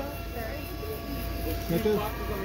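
Voices of people talking, partly in the background, over a steady low rumble.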